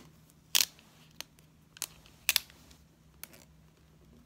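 Paper and a sticker being handled and pressed onto a planner page: a few short, sharp ticks and crinkles, the loudest about half a second in and again just after two seconds.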